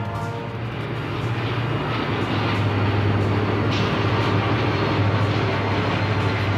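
Southern Pacific diesel-electric locomotives passing close by, their engines droning low and steady with wheel and rail noise, growing a little louder over the first few seconds. Music fades out at the very start.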